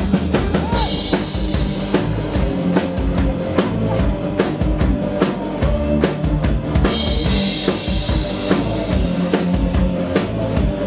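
Live rock band playing an instrumental passage: the drum kit keeps a steady beat on bass drum and snare under bass and electric guitar. Cymbals swell about a second in and again about seven seconds in.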